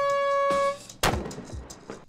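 Handheld canned air horn giving one steady, high blast that cuts off sharply just under a second in. About a second in, a sudden loud noise follows and dies away over half a second.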